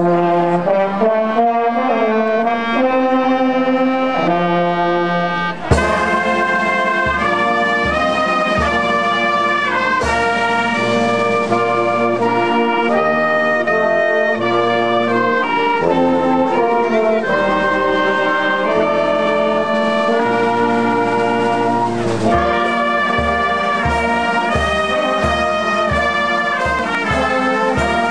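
Outdoor wind band playing: trumpets, trombones, tuba and clarinets in full chords. Held chords open the piece, a sharp crash comes about six seconds in, and from then on a bass drum keeps a steady beat under the melody.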